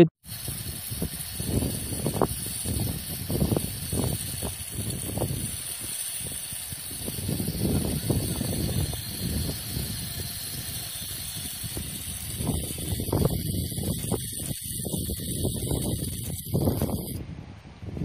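Liquid LPG hissing steadily out of an inverted gas canister as its valve is held open into a steel cup. The hiss stops abruptly about a second before the end.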